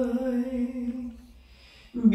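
A held sung bolero vocal note heard only through a small-room reverb (VerbSuite Classics 'Lexi Small Room' preset), its dry signal pulled down. The note dies away in a soft reverb tail over about the first second. It is almost silent until the next sung phrase begins at the very end.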